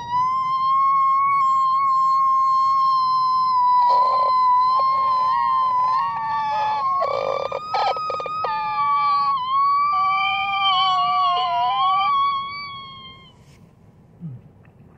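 A man's long, high-pitched falsetto wail, one held note lasting about thirteen seconds. It roughens briefly about four and seven seconds in, wavers and breaks into two pitches near the end, then fades out.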